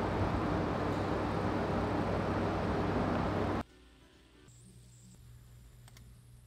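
Loud steady rushing ambience with a low hum, cutting off suddenly about three and a half seconds in. After the cut only a faint room hum and a thin high whine remain.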